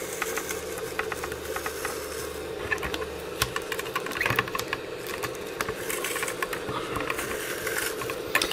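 A small hot-air rework gun blowing steadily while an old adhesive film is peeled off a plastic computer case, with irregular crackling and ticking as the sticky layer comes away.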